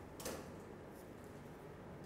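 Quiet room tone with one short, soft noise about a quarter second in.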